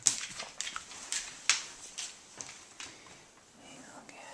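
Irregular clicks and light knocks, several in the first couple of seconds and thinning out later, from a wire dog crate and a puppy moving about inside it as a hand reaches in.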